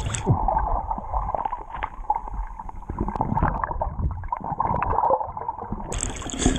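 Underwater sound from an action camera held below the sea surface: muffled sloshing and gurgling of seawater with small bubble clicks, the higher sounds cut off.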